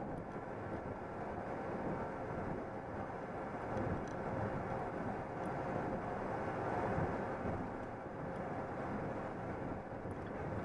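Steady drone of a truck's engine and tyres on the highway, heard from inside the cab while cruising at speed.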